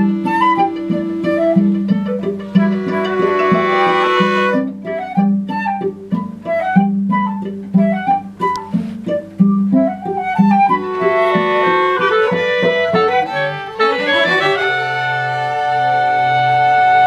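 Live chamber ensemble of bowed strings and flute playing contemporary music. A low note pulses about twice a second under short, scattered melodic figures. The figures climb into an upward sweep about fourteen seconds in and settle on a held chord.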